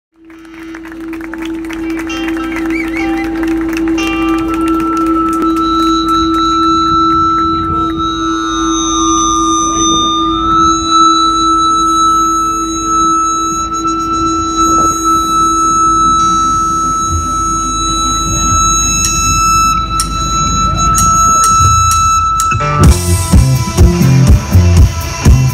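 Live band music: the intro fades in as long held, droning tones with light guitar playing over them, then the drums and full band come in loudly near the end.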